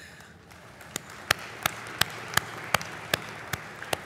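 Brief light applause, with one person's hand claps standing out sharply at a steady pace of just under three a second, starting about a second in.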